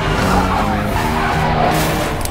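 A vehicle's tyres skidding on the road, heard over the trailer's background score.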